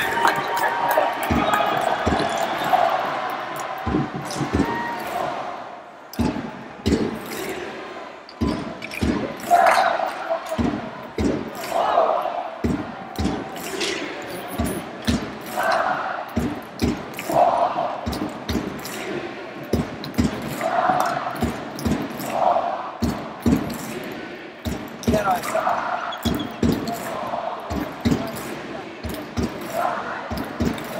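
Ice hockey arena crowd during play: many sharp, rhythmic thumps with voices rising together in repeated chant-like swells every couple of seconds from about ten seconds in.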